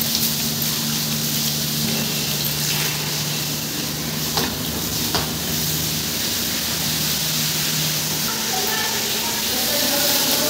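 Water pouring from a hose onto a wet stone floor while a broom scrubs and pushes it along, a steady hiss and splash. Two short clicks come near the middle, over a faint steady low hum.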